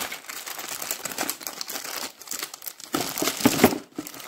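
Clear plastic wrapping crinkling as it is handled around the yellow batteries and charger of a cordless drill kit. The crackling is loudest a little after three seconds in.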